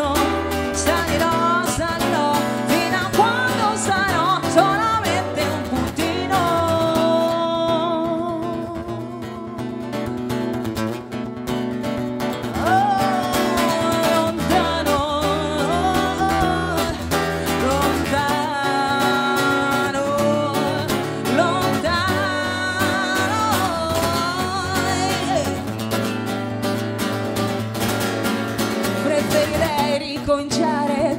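Steel-string acoustic guitar with phosphor bronze strings, strummed in a live pop song, with a voice singing long, gliding melodic lines over it. The music softens for a few seconds around ten seconds in, then comes back up.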